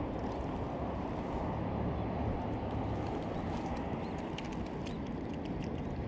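Steady low rumbling wind noise buffeting a small action camera's microphone, with a scatter of faint small clicks and taps in the second half.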